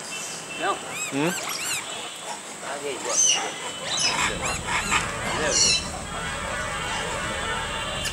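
Rhesus macaques calling: a string of short squeals and coos, each rising and falling in pitch, several overlapping, loudest between about three and six seconds in.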